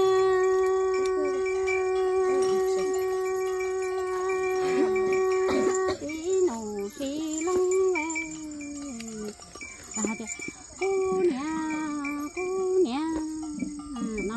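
A woman's voice sings one long held note for about six seconds, then goes on in a line of short wavering notes that glide and break. Faint, evenly pulsing insect chirring runs high in the background.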